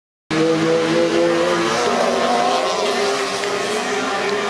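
Several racing buggy engines running hard together, their pitches shifting as they race, with one engine's note climbing about halfway through.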